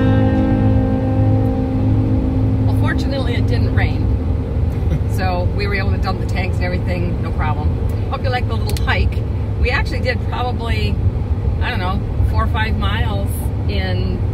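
Steady low road rumble of a moving vehicle heard from inside the cabin, with people talking over it from about three seconds in.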